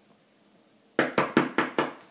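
Five quick, sharp knocks in a row, about five a second, starting about a second in.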